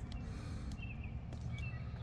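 Pliers working a hook out of a sturgeon's mouth: a few faint clicks over a steady low rumble. Three short faint high chirps come through in the background.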